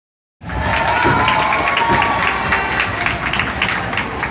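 Audience applauding: many hands clapping at once, starting abruptly near the start of the clip, with some cheering voices in the crowd.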